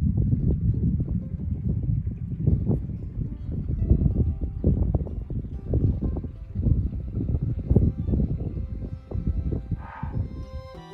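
Wind buffeting the microphone in uneven gusts, a deep rumble that swells and fades, with soft background music underneath.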